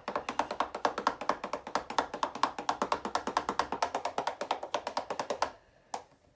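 A paintbrush being swished in hot soapy rinse water, clicking rapidly against the side of its container at about ten ticks a second, stopping near the end.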